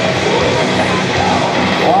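Loud music playing steadily, with a brief exclaimed 'Oh' from a voice near the end.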